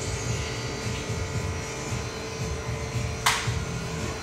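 Steady machine hum and low rumble of a shop's equipment, with one short, sharp hiss about three seconds in.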